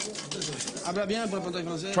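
A man's voice talking, not picked up as words.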